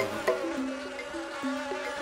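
Sound effect of flying insects buzzing, over background music of slow held notes that step in pitch.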